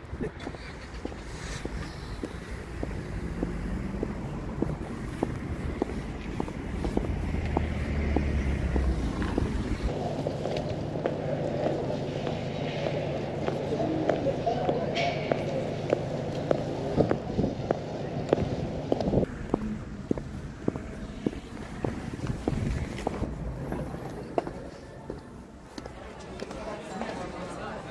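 Footsteps clicking steadily on outdoor paving, about two a second, over a bed of traffic and wind noise. A steady hum joins in for several seconds in the middle.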